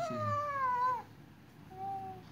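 A young child's high-pitched, drawn-out vocal call, falling in pitch over about a second, followed by a quieter stretch with a faint brief tone near the end.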